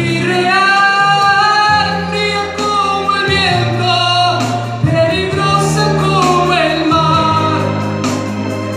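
A man singing a Spanish-language romantic ballad live into a microphone, holding long notes that waver with vibrato, over musical accompaniment with sustained low bass notes that change every second or two.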